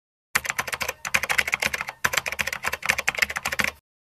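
Rapid keyboard typing clicks in three quick runs, with short breaks about one and two seconds in. They start and stop abruptly, as an added typing sound effect.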